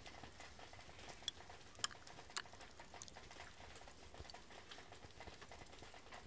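Faint crunches of packed snow: three short, sharp crackles in the first half, then a few fainter ticks over a quiet, steady hiss.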